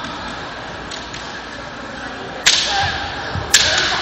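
Two sharp cracks of bamboo kendo shinai striking, about a second apart, the first about two and a half seconds in, each ringing on in the large hall.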